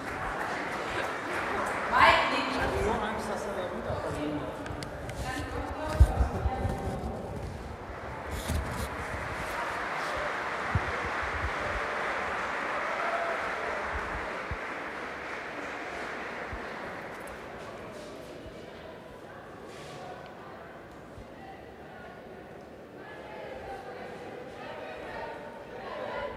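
A group of people applauding, with voices among them; a couple of sharp thumps about six seconds in, and the applause fading away over the last few seconds.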